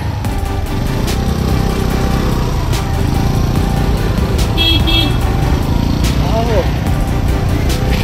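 Scooter running on an uphill road with a steady low rumble of engine and road noise. Two quick high horn beeps sound about halfway through.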